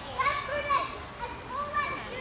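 Children's voices: a few short, high-pitched calls and bits of talk, twice in quick succession, with a steady thin high whine underneath.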